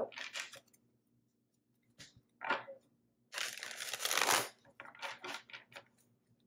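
A deck of tarot cards being shuffled by hand: rustling, slapping bursts of card on card. One longer burst lasts about a second midway, and several short ones follow near the end.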